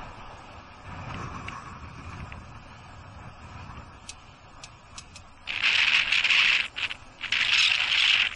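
Faint, steady wind and road noise of a bicycle rolling over a bridge, with a few light clicks. About five and a half seconds in come two loud rasping, scratchy bursts, each about a second long.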